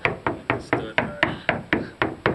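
Knuckles rapping in quick succession on a hollow stud wall, about four knocks a second, sounding it out to find a stud behind the wallboard.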